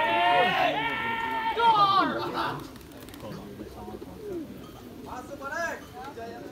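Several people yelling long, high-pitched calls that overlap and glide up and down, calling racing pigeons down into the pole frame of a kolong pigeon race. The calls die down about two and a half seconds in, and a shorter call comes near the end.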